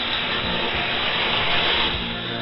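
Shortwave radio static: a steady hiss of band noise heard through a software-defined receiver set to a 4 kHz audio bandwidth, with no speech or music standing out above it.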